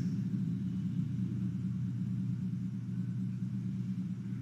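Steady low hum of background room tone with no speech, level and unchanging.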